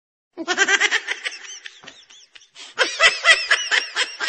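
High-pitched laughter in quick, rapid ha-ha pulses. It fades briefly around the middle, then comes back stronger near the end.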